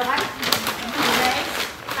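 Plastic wrapping and paper gift bags crinkling and rustling as they are handled, with quiet voices underneath.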